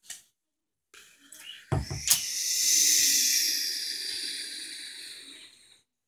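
A thump and a sharp click, then a long hissing sound effect made with the mouth, fading out over about four seconds.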